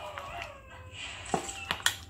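A utensil stirring thick batter in a ceramic mug, with a few sharp clinks against the mug's side in the second half.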